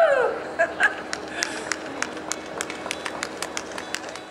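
The end of a shouted word, then one person clapping steadily, about three sharp claps a second.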